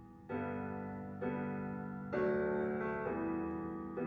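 Piano playing the slow introduction to a song: sustained chords struck about once a second, each fading before the next.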